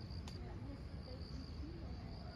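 Insects chirping in the countryside, a steady high-pitched trill broken into short pulses, over a low rumble. A single sharp click comes about a quarter of a second in.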